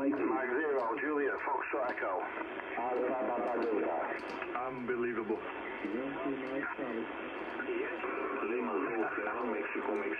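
Single-sideband amateur-radio voices from a Yaesu FRG-7700 communications receiver tuned to 14.302 MHz: several stations calling over one another in a pile-up, unintelligible, with the narrow radio sound cut off above about 3 kHz.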